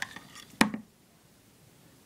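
A single sharp click from a Mora knife being handled, about half a second in, with a few faint handling ticks before it; then it goes nearly quiet.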